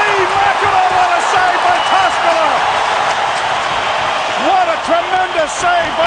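Excited hockey play-by-play commentary, the voice raised high in pitch, over steady arena crowd noise.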